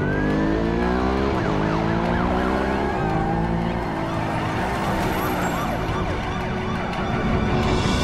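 Police car siren wailing over the engines of a chase, a sport motorcycle and a pursuing police car running, with several short rising squeals.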